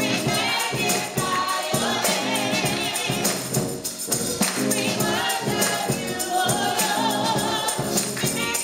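Live gospel music: voices singing with vibrato over sustained organ chords, with a tambourine shaken and struck in rhythm.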